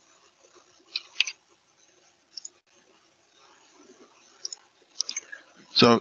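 A few scattered clicks from computer keyboard keys and mouse buttons as an elevation value is typed in and the label is placed, with a man's voice starting right at the end.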